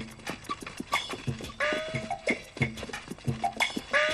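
Hooves clip-clopping, several quick uneven hits a second, over background music with sliding notes.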